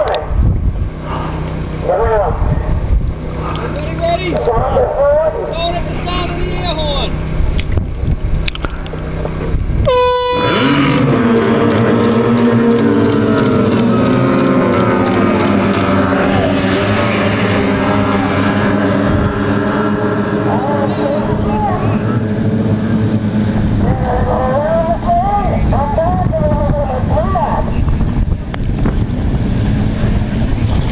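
A short horn blast, then several OSY 400 class racing outboards open up together from a beach start. Their engine note rises as the boats accelerate away, then holds steady at high revs.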